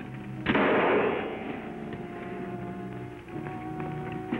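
A single gunshot about half a second in, its report dying away over about a second, followed by sustained dramatic music chords.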